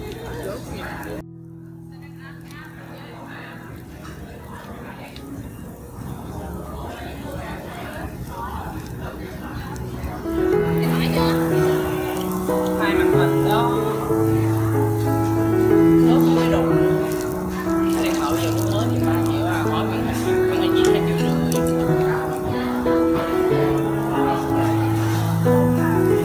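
Background music cuts off about a second in, leaving shrimp and squid sizzling on a tabletop barbecue grill, with restaurant chatter, slowly growing louder. About ten seconds in, melodic background music with a bass line comes in and stays over the sizzling.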